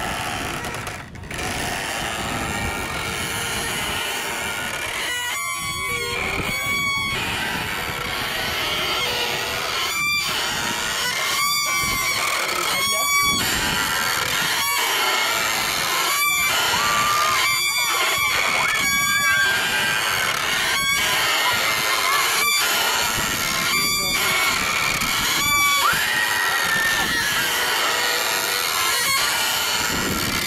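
A small hand-turned wooden Ferris wheel squeaking as it turns, a short squeak about every one and a half seconds, amid children's voices.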